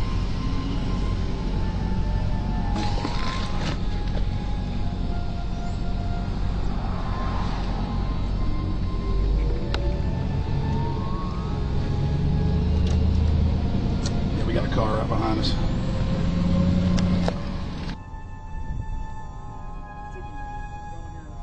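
Steady low rumble of a car driving, heard inside the cabin, with indistinct voices. Near the end the rumble cuts out and background music takes over.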